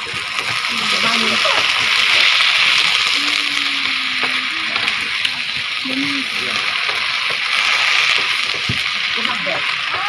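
Ensabi (Iban mustard greens) stir-frying in hot oil in a wok: a steady sizzle that swells as the greens are turned with a wooden spatula.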